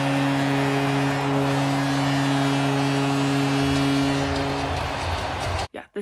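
Hockey arena goal horn sounding one long, steady blast over a cheering crowd, signalling a home-team goal. It cuts off abruptly near the end.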